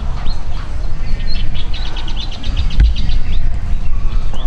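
Small birds chirping in the trees, with a fast run of short chirps in the middle, over a steady low rumble.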